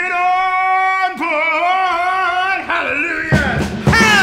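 A male soul singer comes in after a break with a long, high held note with little or no backing, then sings a run of wavering, bending notes. About three seconds in, the drums and full band crash back in under the voice.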